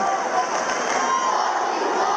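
Crowd of spectators, many of them children, shouting and cheering encouragement during a judo bout, many voices overlapping at a steady level.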